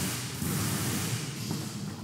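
Steady background noise of a bus assembly hall: a low hum with a faint wash of distant activity and no distinct events.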